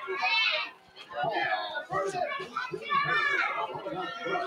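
Children's voices: high-pitched child shouts just after the start and again about three seconds in, over general chatter.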